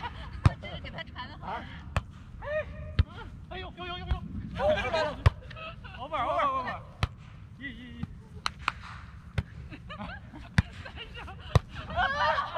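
A volleyball being struck again and again during a rally: a dozen or so sharp smacks spread through, the loudest about half a second in and about five seconds in. Players' voices call out between the hits.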